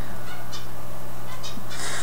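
A steady low hum with no speech, the constant background picked up by a computer microphone in a room.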